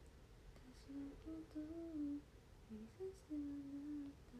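A young woman softly humming a melody, a few words half-sung under her breath. The notes step up and down and end on a long held note near the end.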